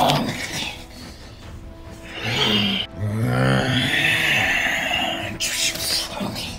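Background music, with a low growling roar about two to four seconds in, voiced for the toy dinosaur in a staged fight. A short hissing burst comes near the end.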